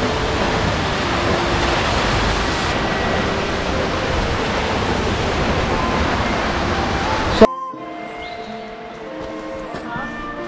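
Hardraw Force, a 100-foot single-drop waterfall, pouring into its plunge pool: a loud, steady rush. About seven and a half seconds in it cuts off suddenly with a sharp click, giving way to quieter background music.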